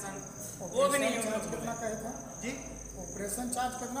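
A man's voice speaking in short, broken phrases, over a steady high-pitched whine that runs throughout.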